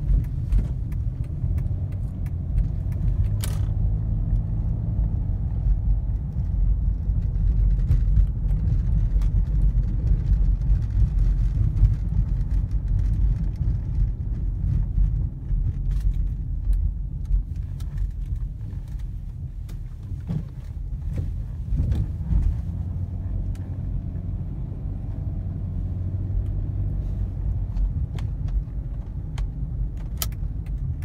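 Inside the cabin of a 2006 Chrysler 300 driving slowly: a steady low rumble from its 3.5-litre V6 and the tyres, with a few short clicks.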